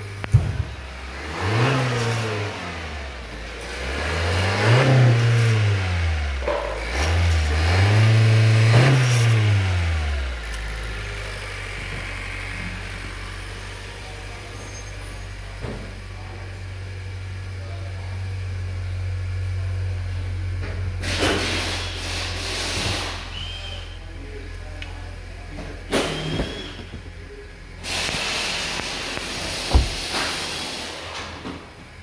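A 2020 Honda Accord's 1.5-litre turbocharged four-cylinder engine revved three times, each time rising and falling back, then settling into a steady idle. A few short knocks sound near the end.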